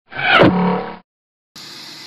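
Short intro sound effect of about a second: a falling sweep with a brief held tone, cutting off abruptly. About half a second later a steady low hiss of outdoor background noise comes in.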